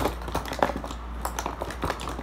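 A quick, irregular run of clicks and taps: small makeup items being handled and knocked together while someone rummages for a lipstick.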